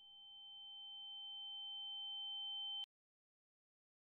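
Two steady electronic sine tones sounding together, one high and one lower, fading in gradually and then cutting off abruptly a little under three seconds in.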